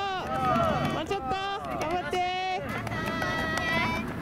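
A voice making an announcement over a public-address loudspeaker, in several phrases, with the footsteps of runners jogging past.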